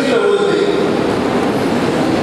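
A man speaking into a podium microphone over a loud, steady background noise, his voice muddy and hard to make out.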